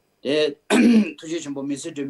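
A man talking, with a short, loud throat-clearing sound a little under a second in.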